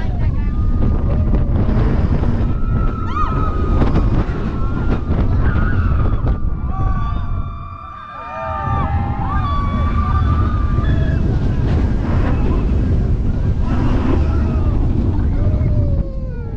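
Roller coaster train rushing up and down a vertical spike, with wind blasting the microphone and riders yelling and screaming. The noise drops away briefly about halfway through as the train slows near the top of the spike, then builds again as it rolls back.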